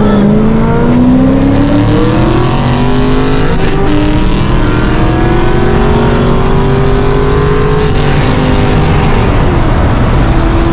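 Chevrolet C6 Corvette V8 at full throttle, heard from inside the cabin, pulling hard from a 40 mph roll. The revs climb, break for an upshift about four seconds in, climb again more slowly, and ease off near the end.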